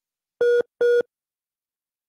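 Two short electronic beeps on a telephone line, each about a quarter of a second long and about half a second apart, both at the same steady pitch.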